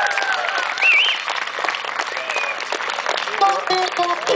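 Audience applauding, with cheering and whooping voices. A few short plucked notes come in near the end.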